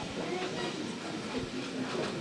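Low murmur of indistinct voices over a steady background hiss in a hall.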